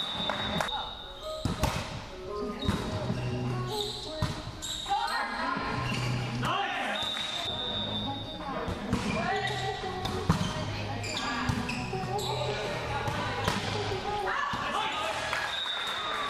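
Indoor volleyball rally in a large echoing gym: sharp slaps of the ball being passed and hit, with players' voices calling out between the hits. A few brief high-pitched squeaks come at the very start, about four seconds in, around seven to eight seconds in, and near the end.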